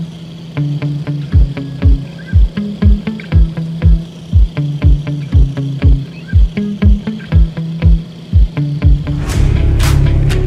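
Background music: a low melody of held notes over a steady kick drum about two beats a second, swelling into a louder, fuller section with cymbal crashes near the end.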